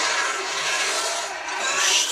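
Battle sound from the television episode: a loud, dense, steady wash of noise, a little louder near the end.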